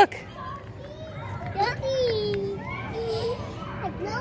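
Young children's voices in the background, chattering and calling out in short bits.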